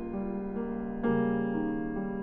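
Steinway concert grand piano played solo: sustained, moderately soft chords, with a new chord struck about a second in.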